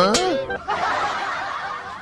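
A man's short snicker: a brief voiced laugh at the start that trails off into a breathy exhale, fading away.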